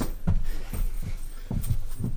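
Two men breathing hard while doing burpees, with soft thuds of hands and feet on a carpeted floor, in short quick pulses about three or four a second.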